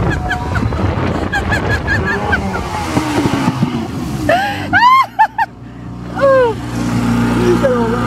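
Motorboat running at speed with rushing water and spray, joined by a burst of high whooping shouts about four to six seconds in. Around five seconds in the rush of water drops away and the engine settles to a steadier, lower hum.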